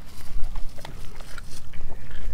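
A Doberman licking up a slice of raw beef from a wooden cutting board and starting to chew it: a string of wet mouth smacks and tongue clicks.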